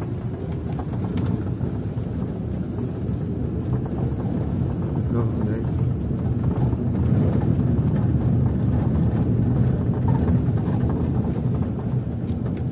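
Road noise inside a moving car's cabin: tyres rumbling over cobblestone paving, with the engine running underneath. It is a steady low rumble that grows a little louder about halfway through.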